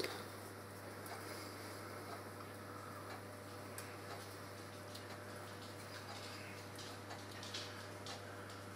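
Faint light ticks and taps of brown sugar being sprinkled by hand onto raw bacon strips on a wire grill rack, over a steady low hum.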